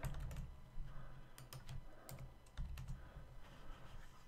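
Typing on a computer keyboard: a scattering of irregular key taps with soft low thuds under them.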